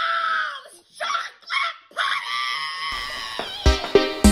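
A woman's excited high-pitched shrieks and yells in several bursts, the last one held for over a second. About three seconds in, plucked guitar notes and a beat start under it.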